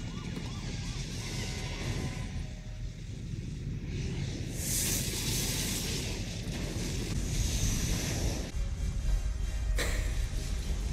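Disaster-film soundtrack: a deep, continuous rumble of an explosion's fire blast with music. A loud rushing hiss of flames comes in from about four and a half seconds and cuts off near eight and a half seconds.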